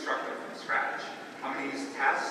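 Speech only: a woman talking into a lectern microphone, giving a lecture.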